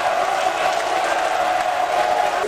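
A large indoor crowd cheering and shouting together in one sustained collective cheer.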